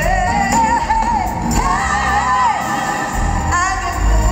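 A live R&B band playing while a woman sings long, wavering held notes into a microphone.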